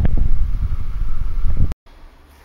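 Heavy wind buffeting on the camera microphone: a loud, low rumble with irregular thumps. It cuts off abruptly a little before the end, leaving faint room tone.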